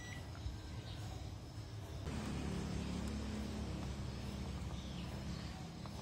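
A digital multimeter's continuity buzzer beeps at a steady high pitch and cuts off just after the start. What follows is low background rumble, which grows louder with a low steady hum from about two seconds in.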